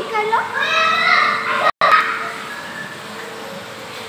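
A young child's high-pitched voice calling out for about the first two seconds, broken by a sudden brief dropout, then only a steady background hum.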